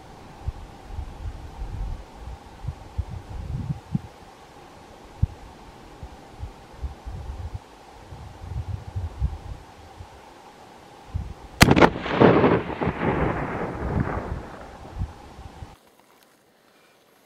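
A single rifle shot about eleven and a half seconds in, its echo rolling back off the surrounding hills and dying away over about three seconds.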